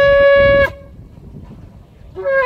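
Shofar blown in one long, steady blast. The held note ends abruptly less than a second in, followed by a pause before the next call.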